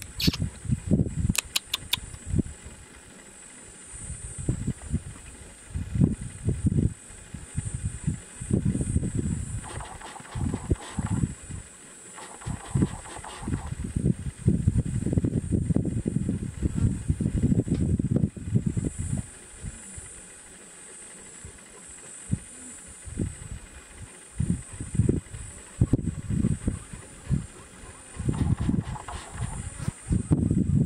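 Wind buffeting the microphone in irregular gusts of low rumble, easing off twice, over a steady high-pitched hiss. A few faint clicks sound about a second in.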